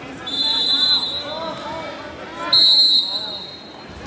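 A referee's whistle blown twice, stopping the wrestling action: a held blast starting about a quarter second in and lasting nearly a second, then a shorter, louder blast about two and a half seconds in. Spectators are shouting in the gym throughout.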